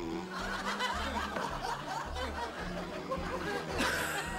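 Audience laughter, many people chuckling and laughing at once, over soft background music, with a short sharp sound just before the end.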